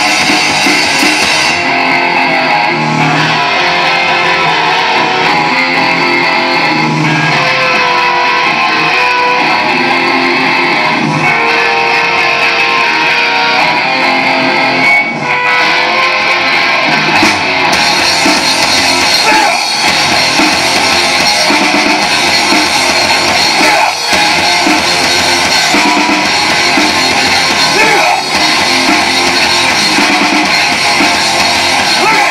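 Live hardcore punk band playing loud: distorted electric guitars, bass and drum kit. The cymbals drop out about a second and a half in and crash back in with the full band about seventeen seconds in.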